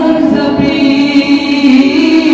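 Dihanam, Assamese devotional group singing: a male lead singer sings into a microphone while the group joins in chorus, in long held, gliding notes.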